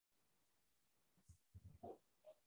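Near silence, with a few very faint, brief sounds in the second half.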